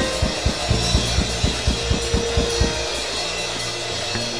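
Church band music: a drum kit beating steadily at about four kick-drum hits a second over held bass and chord notes. The drums thin out about three seconds in.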